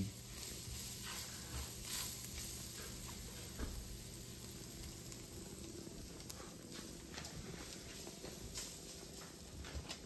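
Ground beef frying faintly in its own fat in an enamelled cast-iron Dutch oven, with soft scrapes and light taps from a silicone spatula stirring it.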